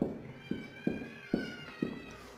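Whiteboard marker tapping and scraping on the board while writing: about five short, sharp taps roughly half a second apart, with a faint high squeak of the tip between them.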